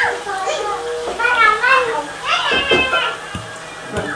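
Young children's high-pitched voices calling out and playing, with a few low knocks a little past the middle.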